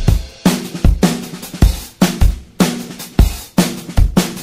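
Background rock music in a drum-kit passage: bass drum and snare hits about twice a second, with cymbals.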